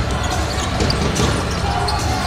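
Basketball game sound in an indoor hall: a ball bouncing on the court over a steady background din, with faint voices.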